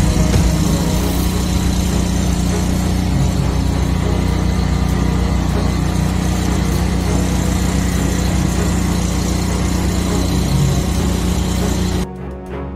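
High-pressure drain-jetting machine's engine-driven pump running steadily while its hose clears a clogged drain line. The sound stops abruptly at the end.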